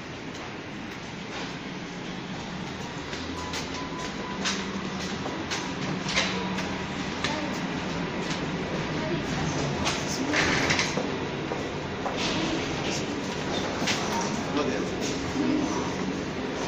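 Indistinct voices and footsteps over a steady background rumble in an airport boarding bridge, with irregular clicks and knocks throughout.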